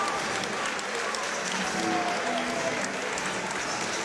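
Crowd applauding steadily.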